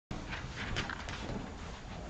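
A few light footsteps of a person walking across a hard floor, over steady room hiss.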